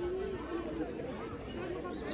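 Indistinct chatter of voices, with no clear words.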